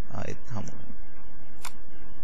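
A single computer mouse click, sharp and brief, about one and a half seconds in, after a few spoken words.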